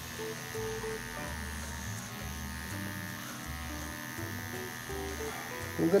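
Cordless electric hair clipper with a number 3 guard buzzing steadily as it is pushed upward through short hair on the side of the head. Soft background music with a slow bass line plays underneath.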